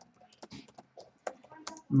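Computer keyboard typing: a quick, uneven run of keystrokes starting about half a second in, as a word is typed.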